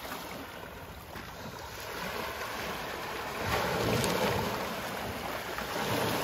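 Small sea waves washing and breaking over shoreline rocks, a steady wash that swells louder about three and a half seconds in and then eases back.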